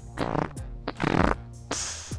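Two farts in quick succession, the second longer and louder, over background music.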